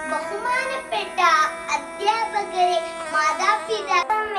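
A young girl singing, over steady background music.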